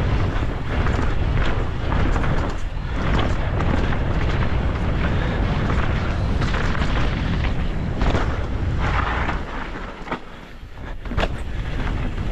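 Downhill mountain bike descending a dirt trail at speed, heard from a camera on the rider: heavy wind rush on the microphone with tyre roar on the dirt and rattling knocks of the bike over roots and bumps. The noise drops off briefly about ten seconds in, followed by a sharp knock.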